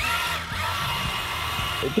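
Electric drive motors of an amphibious remote-control monster truck running as it drives through the water, a high whine that rises briefly at the start and then holds steady.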